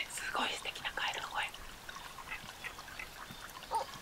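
A small forest stream trickling over rocks, with a faint voice in the first second or so.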